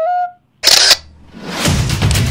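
A flute melody ends on a held note, then a loud camera-shutter sound effect comes about half a second in. A rising whoosh follows and builds into a dense, crashing music intro.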